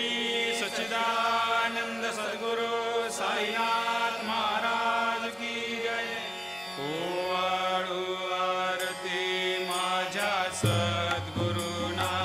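Hindi devotional music: a chant-like melodic line over steady sustained accompaniment, with the melody shifting about seven seconds in.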